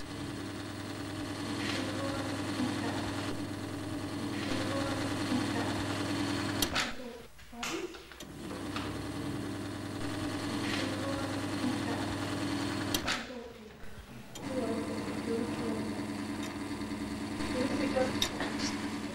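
Small electric motor driving a model fan, a steady hum. It dies away twice for a second or so and starts again. The fan has been switched on by an electronic temperature control because it has got too hot.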